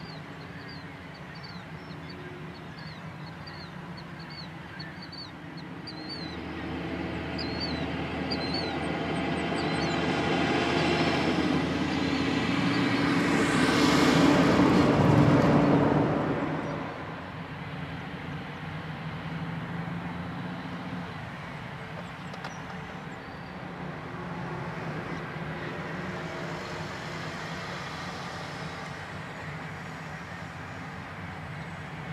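Heavy diesel machinery running in a rail yard. One diesel engine builds up over about ten seconds to a loud peak past the middle, then drops back abruptly. Short high chirps repeat through the first third.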